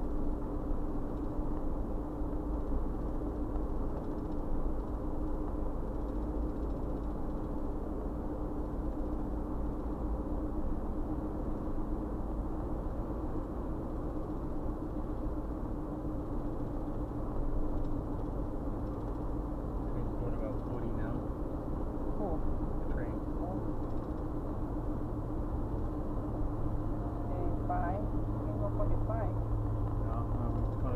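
Interior road and engine noise of a car driving at steady speed, a constant low hum and rumble with a steady tone running through it.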